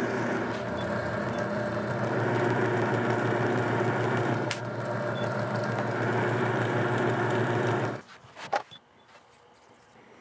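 Electric leather edge-burnishing machine running with a steady hum while a leather strap's edge is worked on it. It stops abruptly about eight seconds in, followed by a few light clicks.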